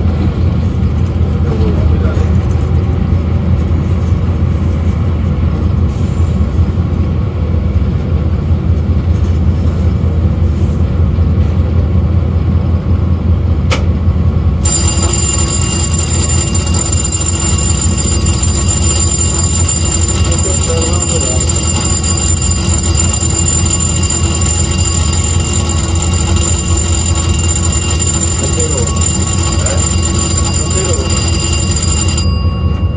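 Diesel-electric locomotive heard from inside its cab as the train runs: a steady, loud low engine drone with rolling track noise. About halfway through, a high steady whine comes in suddenly and holds.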